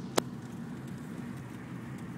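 A steady low hum, with one sharp click just after the start.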